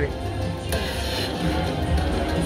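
Aristocrat Dollar Storm slot machine playing its electronic bonus-round music and reel-spin sounds during a free spin, over a steady low hum. The sound grows fuller about three-quarters of a second in, as the reels settle and a new bonus symbol lands, resetting the free spins.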